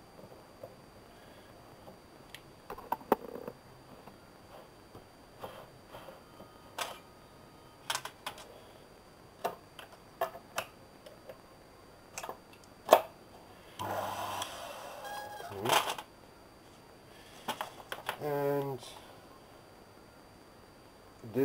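Scattered clicks and light metallic knocks of a part and tools being handled at the chuck of a small hobby lathe, with one louder knock past the middle and then a couple of seconds of rustling.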